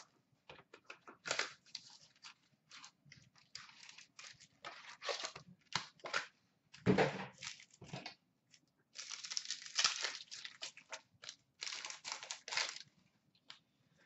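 A 2013-14 Panini Select hockey card hobby box being torn open and its foil packs handled, in irregular bursts of tearing and crinkling, with a louder thump about seven seconds in.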